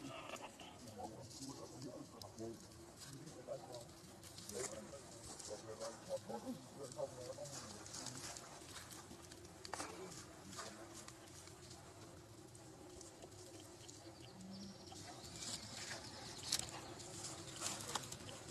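Faint outdoor ambience: soft, wavering low calls in the first half and scattered crackles of dry leaf litter, thickest near the end.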